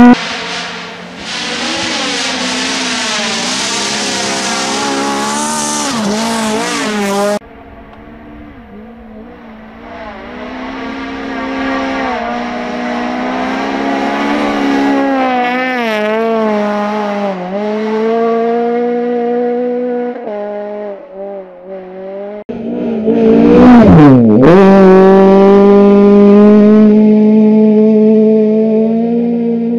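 Honda Civic rally car's engine at high revs on a gravel stage, its pitch climbing and dropping again and again with gear changes and lifts off the throttle. In the first seven seconds a loud rush of tyre and gravel noise lies over the engine; the sound jumps abruptly about seven seconds in and again about twenty-two seconds in as the car is heard at different spots.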